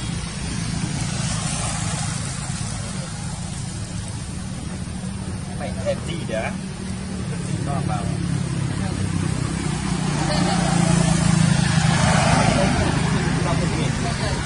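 Outdoor background of indistinct voices over a steady low engine hum, with a few short high sounds about six seconds in and the din swelling toward the end.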